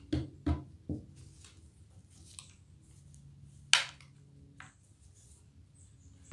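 Handling sounds: a few light knocks in the first second, then one sharper clack a little past halfway, as a screwdriver is set down on a padded workbench mat and the musket is picked up and moved.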